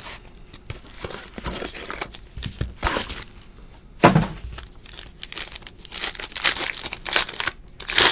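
A foil trading-card pack being crinkled and torn open by hand, in irregular crackles, with a sharp loud tear about four seconds in and more crackling near the end as the cards come out.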